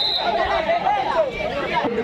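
Overlapping men's voices and crowd chatter around a kabaddi court. A thin, steady high tone stops just after the start.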